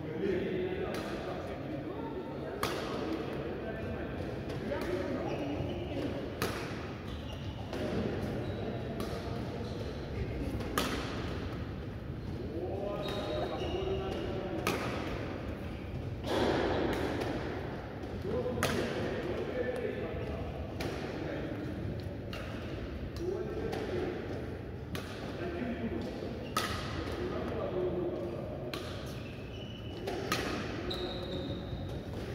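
Badminton rackets striking shuttlecocks in a rally, sharp hits about every one to two seconds that echo in a large hall, over voices talking in the background.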